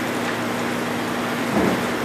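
Steady background hiss with a constant low hum, the room's noise floor, and a brief faint voice about a second and a half in.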